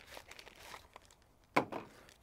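Faint rustling and crinkling of a small paper box and its folded paper insert being opened and unpacked by hand, with light scattered clicks. A voice starts near the end.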